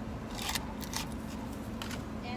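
Paper wrapper on a drinking straw being torn and pulled off, a few short crisp rustles.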